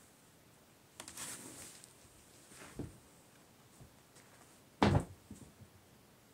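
Handling noises: a brief rustle about a second in, a soft knock near three seconds, and a sharp, loud thump just before five seconds.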